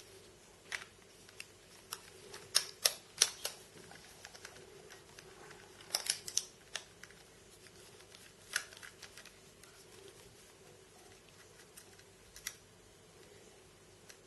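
T6 Torx screwdriver backing a mounting screw out of the side of a 2.5-inch laptop hard drive, with the drive handled in the hand: light irregular clicks and ticks. They come in a cluster about two and a half seconds in, another around six seconds, and a few single ones later.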